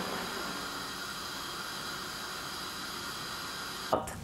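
Steady, even hiss of a gas stove burner under a pot.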